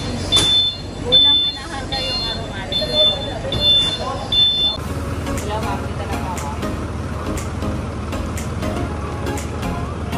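Short high-pitched electronic beeps repeating a little more than once a second over background voices. About five seconds in the beeps stop and a small truck's engine is heard idling steadily.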